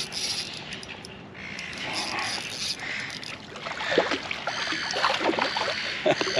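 Fishing reel being wound in with a fish on the line beside a kayak, with light water sounds and a run of small clicks and knocks toward the end as the fish is brought to the side.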